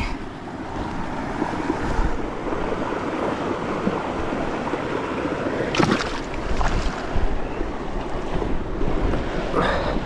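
Steady rush of outdoor water with wind rumbling on the microphone, broken by a few brief clicks about six seconds in and near the end.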